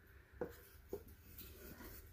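Faint handling of a small carved wooden box: two light knocks about half a second apart, then soft rubbing and scuffing as it is turned over in the hands.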